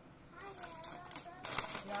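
Crinkly cookie bag being torn open and handled, starting about one and a half seconds in as a dense crackling that is the loudest sound here. Before it, a short wavering voice sound.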